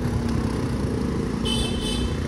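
Steady engine and road rumble of a vehicle moving along a street, with a short high-pitched horn toot near the end.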